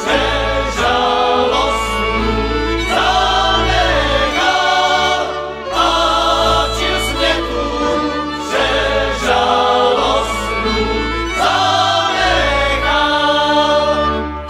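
Slovácko cimbalom band music: several male voices singing a folk song together, accompanied by violins, cimbalom and double bass.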